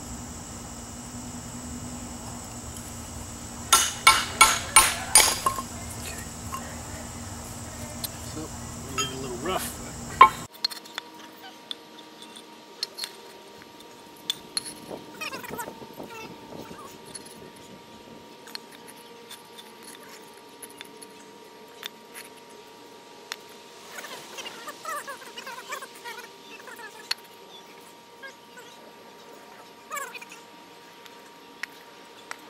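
A brick chisel struck with a hammer to split a salvaged brick into a half brick: about six sharp strikes in quick succession, about three a second, with a few more knocks shortly after. Later, light clinks and knocks of fired-clay bricks set down against one another.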